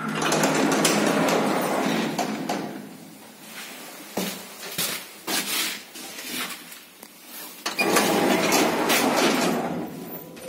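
A 1978 SamLZ passenger elevator running, heard from inside the car. A loud rattling rush lasts about three seconds, then a quieter stretch with scattered clicks and knocks, then a second loud rush near the end.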